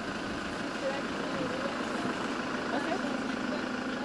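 Steady engine noise of a van, heard from inside its cab, with faint voices in the background.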